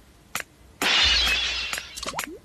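Instrumental break in the karaoke backing track of a Telugu film song: a near-quiet pause with one faint click, then, a little under a second in, a sudden loud crash with a low boom under it that fades out over the next second.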